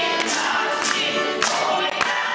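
Children's folk choir singing a Russian folk song in chorus, with sharp sibilant consonants standing out.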